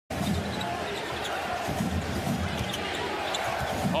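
Basketball dribbled on a hardwood court: repeated low bounces over the steady noise of an arena crowd.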